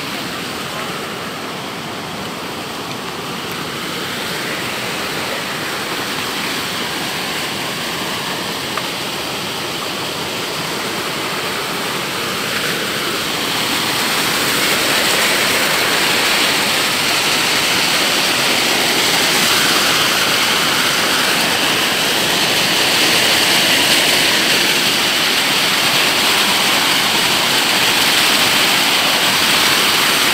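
Rushing mountain stream pouring over rocks: a steady rush of water that grows louder, most of all about halfway through.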